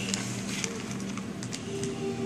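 A clear plastic zip-top bag crinkling and rustling as a child handles it, with scattered small crackles.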